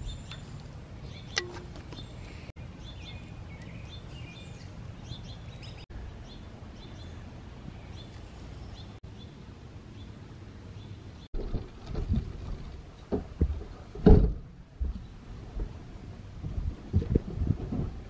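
Outdoor ambience with birds chirping faintly now and then over a steady low background. Irregular low thumps and rustles take over in the last several seconds.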